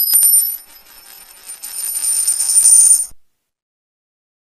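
High-pitched metallic jingling over steady high ringing tones, with no bass or beat under it; it cuts off about three seconds in.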